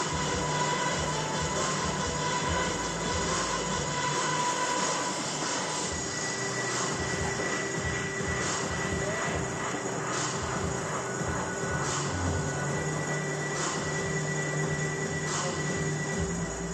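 Background music and a steady drone fill a gym, with scattered thuds of running footsteps on the floor every second or so during shuttle runs.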